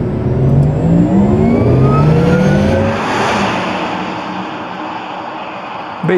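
Porsche Taycan Cross Turismo electric car accelerating past. A layered electric-drive hum climbs in pitch over the first three seconds. Road and tyre noise swells to a peak about three seconds in, then fades as the car drives away.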